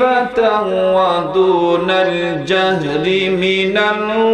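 A man's voice chanting in long, melodic held notes that slide slowly up and down, the sung delivery of a Bengali Islamic sermon (waz), heard through the microphone.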